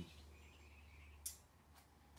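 Near silence: a low steady hum, with one sharp click a little over a second in and a couple of fainter ticks after it.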